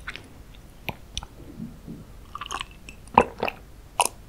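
Close-miked mouth sounds of a person chewing and swallowing: scattered soft wet smacks and clicks, with two sharper clicks a little after three seconds in.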